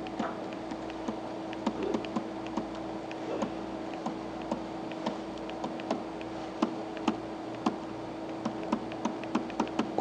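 Light, irregular clicks and taps of a pen stylus on a tablet surface while words are handwritten, over a steady hum.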